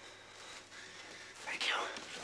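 Quiet room tone, then a brief whispered voice near the end.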